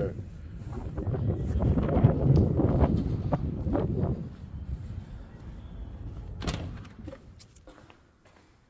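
Wind buffeting the microphone outdoors as a low, uneven rumble, strongest in the first half and then dying away. About six and a half seconds in, a house's back door shuts with a sharp knock, followed by a few light clicks.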